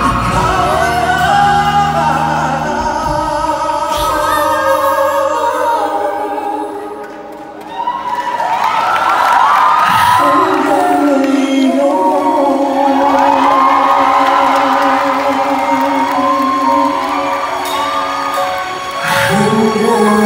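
A man and a woman singing a pop duet live with band accompaniment. The music dips briefly about seven seconds in, then the voices come back in with long held notes.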